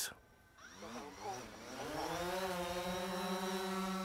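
Quadcopter drone's motors and propellers spinning up: a buzz that rises in pitch about half a second in, then holds steady as the drone lifts off and hovers.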